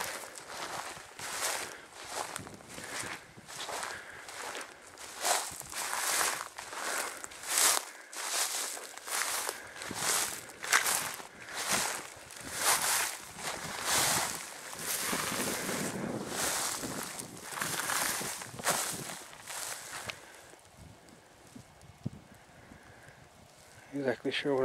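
Footsteps tramping through dry grass and soft boggy ground at a steady walking pace, about one and a half steps a second, stopping about twenty seconds in.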